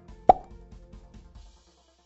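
A single short pop sound effect about a quarter-second in, over soft background music that fades out about a second and a half in.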